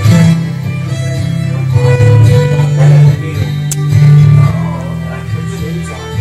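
A fiddle and an acoustic guitar playing a tune together, the guitar strummed under the bowed fiddle melody.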